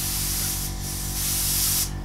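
Harder & Steenbeck Evolution AL plus airbrush spraying paint at low air pressure for fine line and speckling work: a steady hiss of air and paint. It dips briefly about a third of the way in and cuts off just before the end as the trigger is released.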